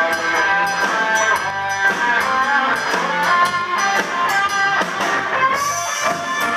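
Live blues-rock band playing loudly: electric guitars over bass guitar and drums with cymbals, a guitar line bending and sliding between notes.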